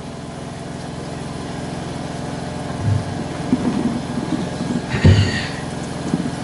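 A steady low machine hum holding one pitch with overtones, with a couple of faint knocks about three and five seconds in.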